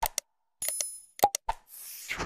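Sound effects of a like-and-subscribe animation: a few sharp mouse clicks, a short high bell-like ding, then a swish near the end as the graphic changes to the next screen.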